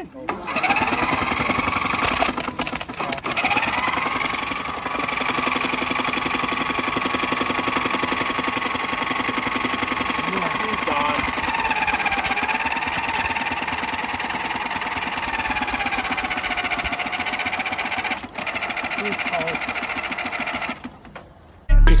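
Riding lawn mower engine starting and then running steadily, fitted with a snorkel intake and exhausting through a tall upright pipe. About halfway through its pitch dips and wavers. It cuts off suddenly just before the end.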